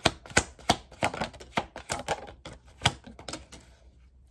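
A deck of tarot cards being shuffled overhand between the hands: an irregular run of sharp card clicks and slaps, a few a second, thinning out near the end.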